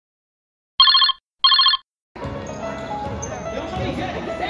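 Two short bursts of an electronic ringing tone, like a telephone ring, about half a second apart. From about two seconds in, voices and gym noise start, with music over them.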